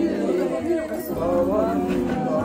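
Overlapping voices of a gathered group: chatter mixed with singing of the aarti.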